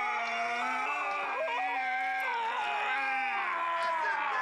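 A long, drawn-out scream that starts abruptly and holds without a break, several voices or pitches layered together and wavering slowly in pitch. It is a horror-film sound effect.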